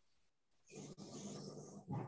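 A pause between slowly dictated words. Only a faint hiss is heard for about a second.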